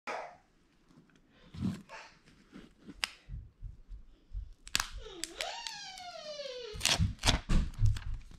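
Fingers picking at the seal of an iPhone 12 Pro Max box, then the paper pull-tab wrapping torn off in loud rips and crackles in the last second or so. Midway there is a drawn-out voice-like sound that dips, rises, then glides slowly down in pitch.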